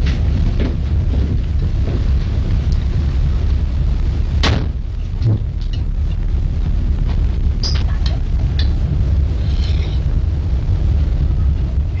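Steady low rumble of a ship's engines on an old film soundtrack, with a few sharp clicks about four and a half and five seconds in.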